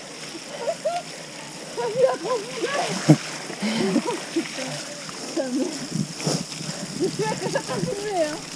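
Mountain bike tyres splashing through mud and puddles on a wet trail, with two sharp hits about three and six seconds in. A voice talks over it.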